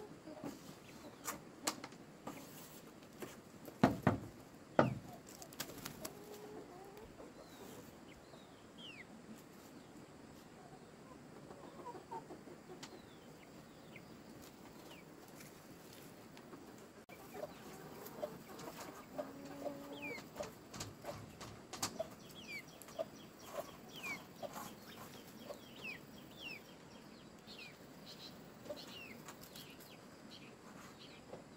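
Chickens clucking, with short falling chirps and scattered clicks, and two loud knocks about four and five seconds in.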